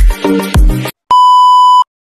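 Electronic intro music with a heavy bass beat that cuts off just under a second in, followed by one steady high electronic beep lasting under a second.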